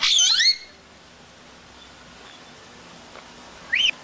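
African grey parrot whistling: a loud burst of swooping whistles in the first half-second, then one short rising whistle just before the end.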